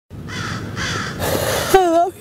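A woman crying: two breathy sobs, a loud gasping breath about halfway through, then a high, wavering wail near the end.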